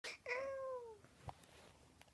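A cat's single short meow, falling in pitch, followed by a faint click.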